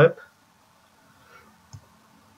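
A single computer mouse click near the end, over quiet room tone with a faint low hum.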